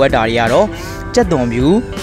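Background song with a voice singing two long notes that dip and slide in pitch.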